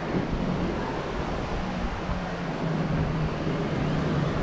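Steady rush of wind on the camera's microphone, with a low hum that fades in and out underneath.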